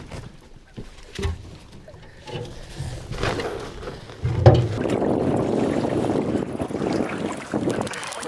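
Knocks and bumps on an aluminum canoe as a person steps in from a wooden dock and settles aboard, the loudest a low thump about four and a half seconds in. Then steady wind and water noise as the canoe is out on the lake.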